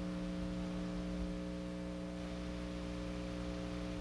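A steady low electrical hum, several steady tones at once, over a faint hiss, unchanging throughout.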